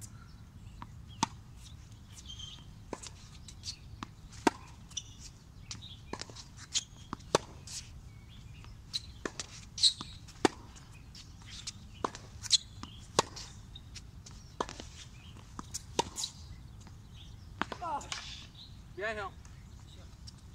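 Tennis rally on a hard court: sharp pops of the ball off racket strings and off the court surface, about one every second, the loudest from the near player's racket.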